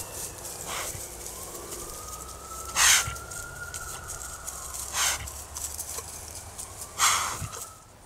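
A feral hog sow, out of sight, gives short breathy alarm huffs about every two seconds, four in all, the second and fourth the loudest: a wary sow warning the sounder about the trap. Behind them a faint wail slowly rises and falls.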